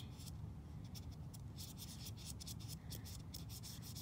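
Crayola felt-tip marker drawn over a plastic doll's face, a quick run of many short rubbing strokes as a beard is scribbled on.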